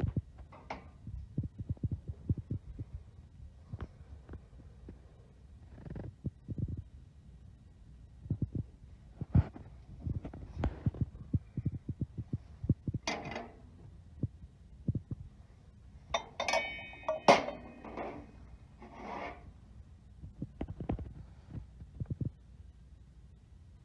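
Irregular low thumps and rubs from a handheld phone being moved and handled, with clear glass bowls and plates clinking as they are shifted on a store shelf. The loudest clinks come about two thirds of the way through, one with a short glassy ring.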